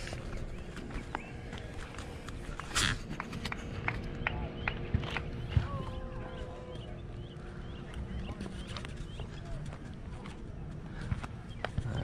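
Quiet outdoor ambience of scattered light footsteps and small knocks on asphalt, with faint bird chirps and a faint steady hum; the RC truck's engine is not running.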